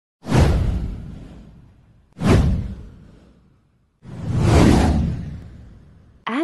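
Three whoosh sound effects of a title animation: the first two hit suddenly and fade over about a second and a half, the third swells up before fading away.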